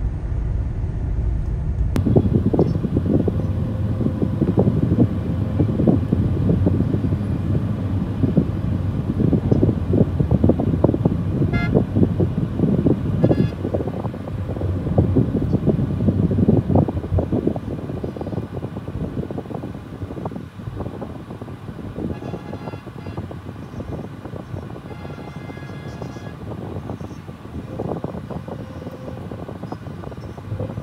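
Dense city traffic: a heavy rumble of engines and road noise, with short vehicle horn toots about a third of the way in. Around three quarters of the way through comes a longer run of repeated honking.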